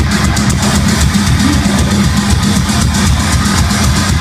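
A heavy hardcore band playing live at full volume: distorted electric guitars and bass under fast, dense drumming with many cymbal hits, recorded from within the crowd.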